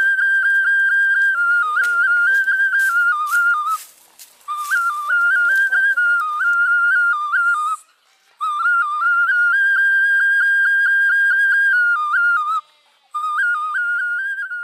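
Background music: a single high, flute-like melody of short stepping notes, played in phrases of about four seconds with brief breaks around four, eight and thirteen seconds in.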